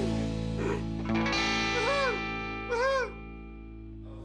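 Music: distorted electric guitar over a held chord at the end of a rock song, with notes bent up and back down a few times. About three seconds in it drops away to a fading ring.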